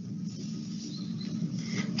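Faint room noise with a weak steady low hum and a few soft clicks.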